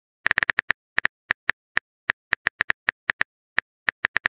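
Phone keyboard typing clicks: a quick, uneven run of about twenty short taps, one for each letter of a text message being typed out.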